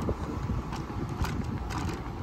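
Wind buffeting the microphone over the low rolling rumble of an electric scooter ridden on pavement, with a few light clicks.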